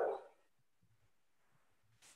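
A voice trailing off at the end of a spoken question, followed by near silence.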